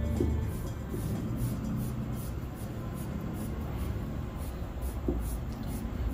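Soft, continuous scraping of packed damp sand as a small hand sculpting tool shapes the pointed top of a sand tower.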